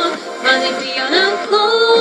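A woman singing a ballad solo, her line gliding up in pitch mid-phrase and settling into a long held note near the end.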